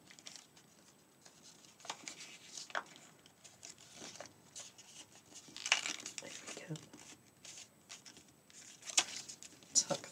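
Stiff paper crinkling and rustling in short scattered bursts as a large origami fold is pulled up, pressed flat and creased by hand.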